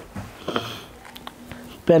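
Soft rustling of cotton fabric being unfolded and handled, with a short sniff about half a second in.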